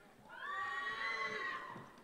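A long, high-pitched whooping cheer from someone in the audience, rising a little and then falling away over about a second and a half, heard at a distance under the announcer's microphone.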